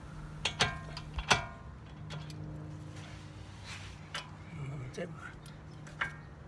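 A few sharp metallic clinks of a wrench on the brake caliper bolts as the caliper is refitted over new brake pads, all within the first second and a half, over a steady low hum.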